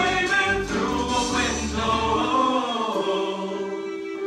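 A live vocal ensemble singing held, wordless harmonies with musical accompaniment, some notes sliding in pitch; the low bass drops out about two and a half seconds in.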